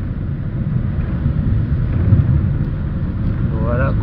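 Steady low rumble of a car driving along a road, heard from inside the cabin: engine and tyre noise.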